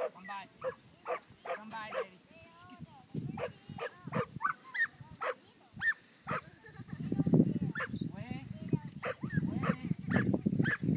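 Holstein calves calling and a border collie barking in short, repeated calls while it herds them, with a low rumbling noise that grows louder from about seven seconds in.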